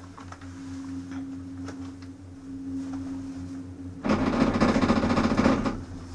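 Chairlift chair's grip running over a line tower's sheave train on a Doppelmayr detachable chondola: a loud rapid rattling rumble starts about four seconds in and lasts about two seconds, over a steady low hum.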